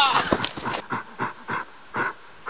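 A man's voice cut off just after the start, then a run of short panting breaths, about three a second, sounding duller than before.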